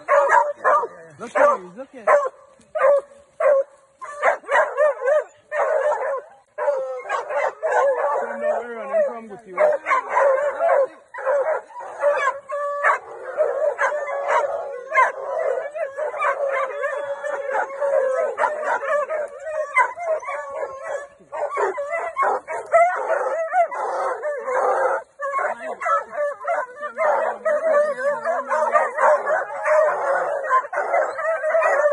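A pack of hunting dogs barking and howling together. It starts with separate barks about two a second and becomes a dense, overlapping din of several dogs at once.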